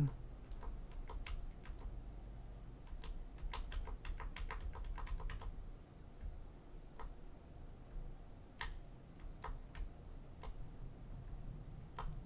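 Faint, scattered clicks over a low steady hum, with a quick run of clicks in the middle and a few single clicks later on.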